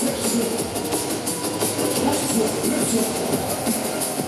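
Drum and bass music played loud over a club sound system, a dense, unbroken mix with fast hi-hat-like ticks on top.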